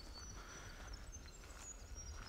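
Quiet bush ambience with faint, thin, high bird calls and a low background rumble.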